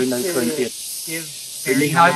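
A man speaking in short phrases over a steady high hiss, with a pause in the middle.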